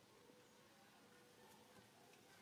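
Near silence: faint background hiss with no distinct sound.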